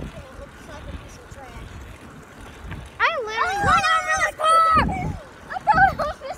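A child's high-pitched voice calling out loudly from about three seconds in, with a second short call near the end. Before that, muffled rubbing and handling noise from the phone being carried in a pocket.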